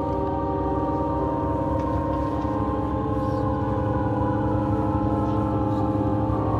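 Instrumental music: a dense drone of many sustained, steady tones over a fluttering low texture, swelling slightly louder.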